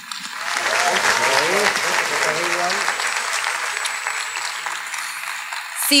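Audience applauding in a theatre, the clapping swelling quickly at the start and easing a little toward the end, with voices heard faintly through it.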